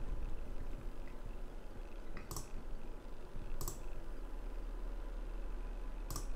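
Computer mouse clicking: two sharp clicks about a second and a half apart, over quiet room tone.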